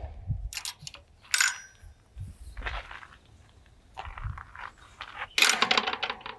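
A handful of short metallic clinks and taps from a steel gate latch being fitted to a wooden gate post, spaced about a second apart over a low rumble.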